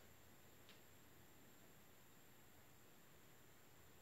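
Near silence: faint room hiss, with one faint tick a little under a second in.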